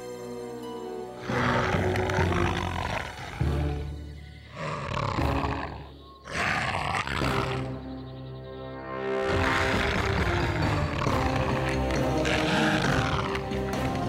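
Background music from a cartoon soundtrack, with a predatory dinosaur's roars added as sound effects in several bursts.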